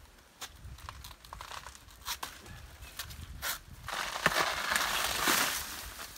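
Banana leaves and the fibrous banana stem tearing and rustling as a long pole tool hooks and pulls at them. There are scattered snaps at first, then a louder, dense crackling tear for the last two seconds or so as the stem gives way.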